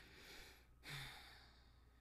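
Near silence broken by a woman's faint sigh about a second in, a soft breath with a brief hum in it.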